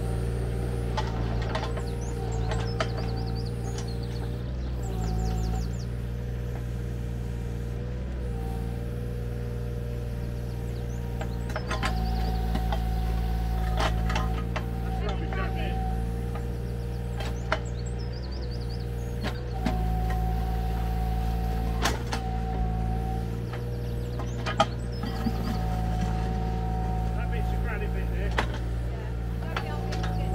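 Mini excavator's diesel engine running steadily, with a hydraulic whine that comes and goes as the boom and bucket are worked, and occasional sharp knocks of the bucket against stones.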